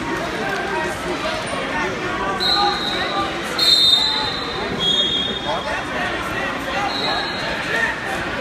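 Crowd talking and calling out in a gymnasium, many voices overlapping, with four short, steady high-pitched tones in the middle, the first about two and a half seconds in and the last near the end.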